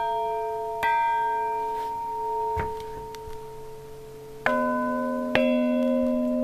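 Church bells struck in the tower, each strike ringing on and slowly fading. One bell is struck twice, about a second apart, at the start. A deeper-toned bell follows with two strikes about a second apart near the end.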